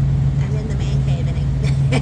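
A vehicle engine idling with a steady low hum, under quiet voices.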